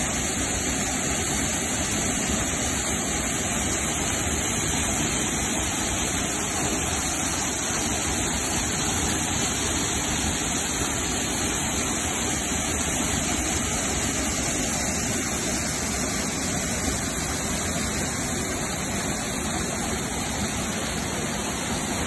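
Mountain waterfall cascading down steep rock slabs: a steady rush of falling water that holds the same level throughout.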